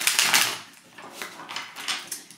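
A deck of tarot cards being shuffled by hand, the cards rustling and flicking against each other in quick bursts, loudest in the first half-second and softer after.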